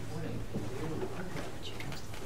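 Low, indistinct murmured voices in a room over a steady low hum.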